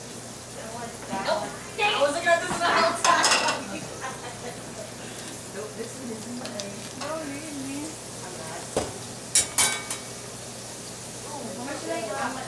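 Burger patties and bread frying in stainless steel pans on a gas range, sizzling steadily, while butter goes into a hot skillet. Louder bursts of sizzle and clatter from metal utensils against the pans come about two to three seconds in and again near nine seconds.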